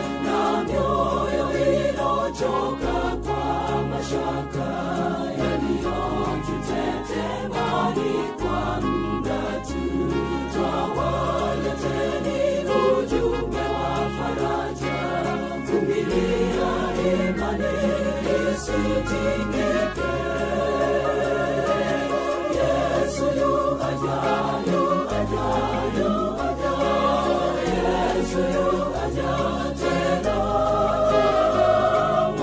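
Seventh-day Adventist gospel choir singing a song, with a steady bass line underneath that changes note every second or two.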